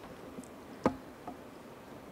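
A quiet pause in a conference hall, room tone with one brief sharp click a little under a second in.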